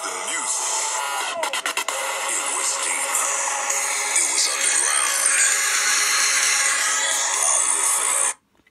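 Trance music from a podcast episode playing through a smartphone's small speaker. It grows louder at the start as the volume is turned up.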